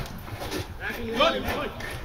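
Players' voices calling across a football pitch during open play, quieter and farther off than the nearby shouting, with no clear words.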